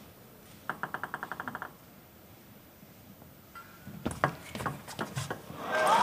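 Table tennis ball: a quick run of about a dozen light bounces about a second in, then scattered sharp ball hits of a rally late on. Crowd noise swells near the end as the point finishes.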